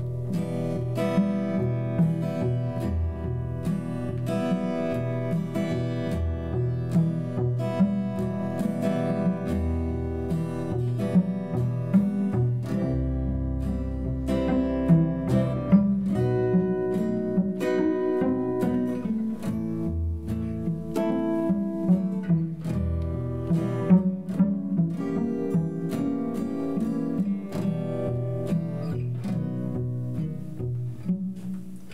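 Acoustic guitar and bowed cello playing together in an instrumental passage with no singing. The guitar's plucked notes sound over the cello's sustained low notes.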